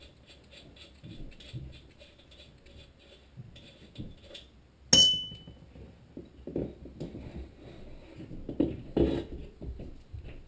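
Rusty flywheel of a Tecumseh HM80 small engine being worked loose from the crankshaft by hand: faint scraping and soft knocks, with one sharp metallic clank that rings briefly about halfway through.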